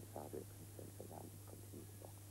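Faint, indistinct man's speech over a steady low hum.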